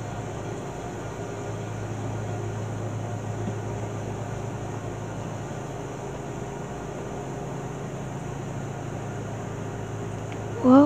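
Steady low hum under an even hiss, unchanging throughout, with no music or voice.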